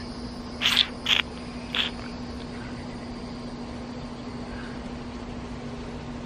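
Three short hisses of breath through bared, clenched teeth in the first two seconds. A steady low hum and a faint high insect drone run underneath.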